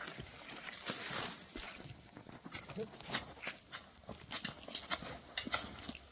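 Long-handled hand hoe chopping and scraping into soil and weeds around a young plant: sharp, unevenly spaced strikes, about two a second.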